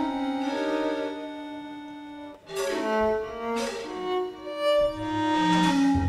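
Violin playing slow, held notes with vibrato. After a brief dip about two and a half seconds in, deeper held notes come in beneath it.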